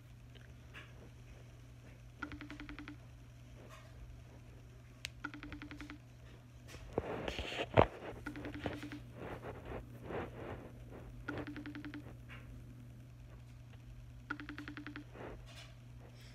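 Phone's outgoing call ringing tone, a short buzzy beep repeating about every three seconds while the call goes unanswered. About halfway through the phone is handled with a rustle and one sharp knock.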